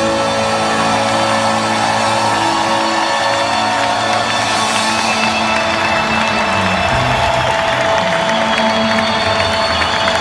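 A rock band holding and ringing out a sustained chord in an arena, with a large crowd cheering and whooping over it. The cheering swells from about halfway through.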